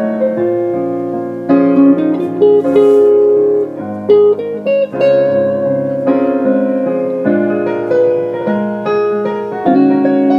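Live instrumental duet of an electronic keyboard playing a piano sound and a hollow-body electric guitar, with chords and melody notes struck about once a second and left to ring.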